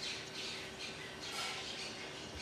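Birds calling in a quick series of short, high chirps, a few each second.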